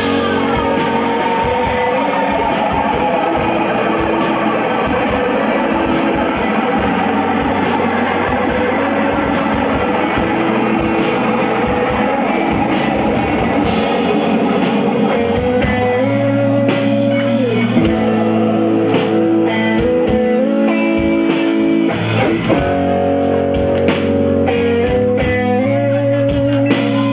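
Live rock band playing an instrumental passage, electric guitars over bass and drums, loud and steady. About halfway through, the dense wash of guitars gives way to clearer, separately picked guitar notes and held chords.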